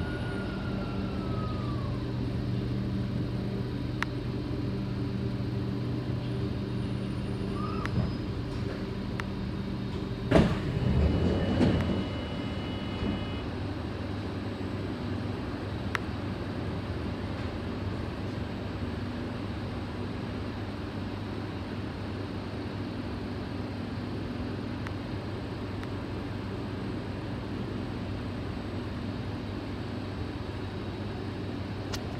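Kawasaki C751B metro train coming to a stop: a high whine falls in pitch and fades in the first two seconds as it slows. About ten seconds in a sharp clunk and a short rush of noise with a brief high tone mark the doors opening, then the train hums steadily while standing at the platform.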